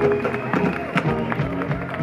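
Live funk band playing: drums striking a steady beat under keyboards and bass.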